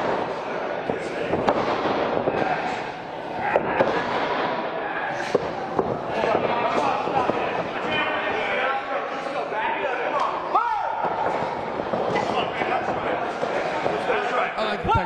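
Pro wrestlers grappling and striking in the ring, with repeated sharp slaps and thuds of blows and bodies hitting, over a steady murmur of crowd voices and a single shout about three quarters of the way through.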